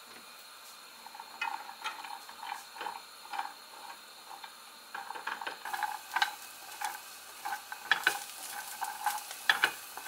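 Walnut pieces being stirred with a spatula in a dry frying pan without oil: irregular scrapes and rattles as the nuts shift against the pan. The strokes start about a second in and come faster and louder from about halfway.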